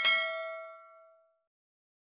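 Notification-bell sound effect: a single bell ding with several ringing tones that fades away within about a second.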